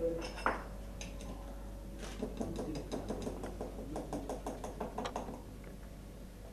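A metal spoon clinking and scraping against a bowl as cake batter is mixed, in a quick, uneven run of taps from about two seconds in.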